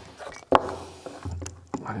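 Hard plastic clicking as the motor of a Makita cordless drill-driver is worked out of its plastic housing: one sharp, loud click about half a second in, then a few softer clicks and rattles, because the motor is stuck in the housing.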